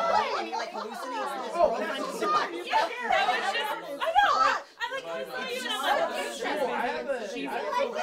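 Several people talking over one another: overlapping, excited conversation among a small group.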